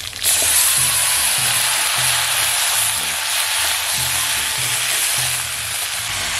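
Chopped mixed vegetables hitting hot oil in an iron wok: a loud sizzle that starts suddenly, then holds steady and eases slightly as the vegetables are stirred with a steel spatula.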